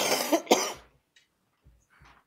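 A person coughing twice in quick succession near the start.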